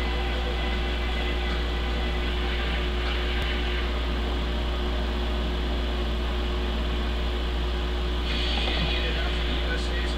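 A steady low hum over a constant background noise, with a short brighter hiss about eight seconds in.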